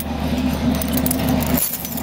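A ring of metal keys jangling and clinking in the hand, in short scattered clinks, over a steady low hum.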